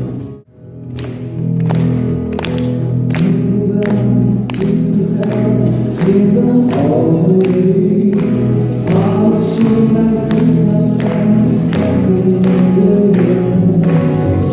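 A small band playing live, with acoustic guitar, electric bass and a steady hand-percussion beat, while male voices sing. The sound drops out briefly about half a second in, then the song carries on.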